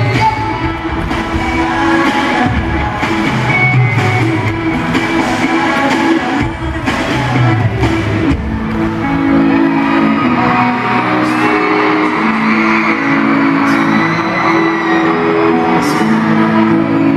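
Live pop band music played through an arena PA, heard from among the audience: a drum beat and singing for about the first half, then the drums drop out and held chords carry on.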